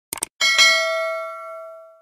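Subscribe-button animation sound effect: a short double click, then a bell-like ding of several ringing tones that fades away over about a second and a half.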